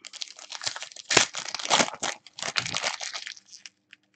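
Foil wrapper of a Panini Prizm Euro 2016 trading-card pack being torn open and crinkled by hand. It is a dense crackle, loudest a little over a second in, dying away near the end.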